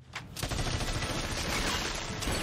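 A continuous burst of rapid automatic rifle fire from the film's soundtrack, starting about half a second in.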